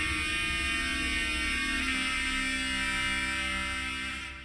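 Dramatic TV-serial background score: a sustained synthesizer chord held over a low pulsing drone, with a brighter layer swelling in about two seconds in.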